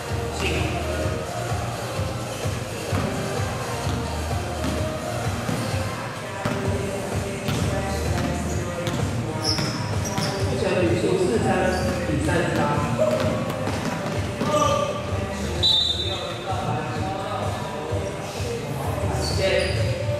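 A basketball bouncing on an indoor court during a game, with indistinct players' voices in the echoing gym hall and music underneath.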